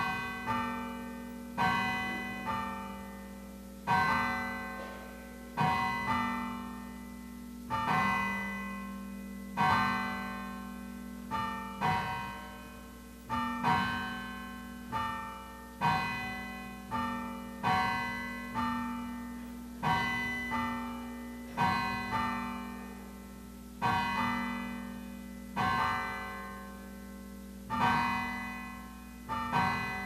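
Slow piano music: chords struck about every two seconds, with the odd lighter note between them, each left to ring out and fade over a held low note.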